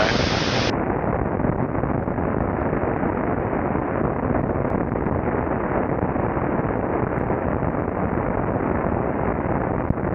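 Steady, muffled rush of airflow over a camera mounted on the wing of an Adam A500 in flight. It sets in about a second in, after a brief spell of cabin sound.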